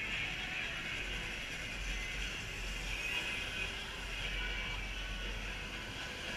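Steady, low background noise of an outdoor kart race, with no distinct events: the general din around the track as small electric karts run past.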